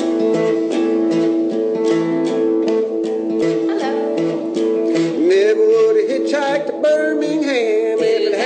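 Acoustic string band playing an instrumental intro: guitar strummed in a steady rhythm under held chords, with a wavering, sliding lead melody coming in about five seconds in.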